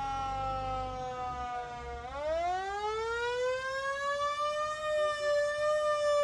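Fire truck siren wailing. Its pitch slides slowly down for about two seconds, then sweeps back up and holds high, with a low rumble underneath at first.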